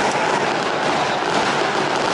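Fireworks going off in a dense, continuous run of crackling and popping, with no single bang standing out.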